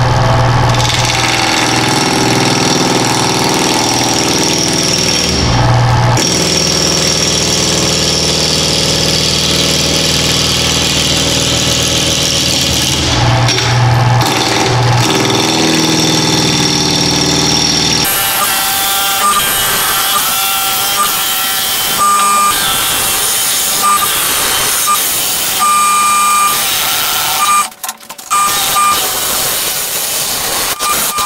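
Wood lathe running while a bowl gouge cuts a spinning mesquite blank. The sound of the cut changes about two-thirds of the way through, with short high tones coming and going.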